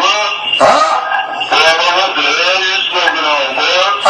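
A man speaking loudly into a radio studio microphone, his words hard to make out.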